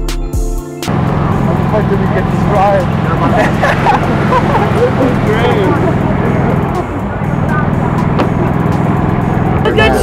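Electronic music cuts off about a second in. It gives way to several people talking and calling out over one another while riding in a small open vehicle, with a steady low hum of vehicle and background noise beneath.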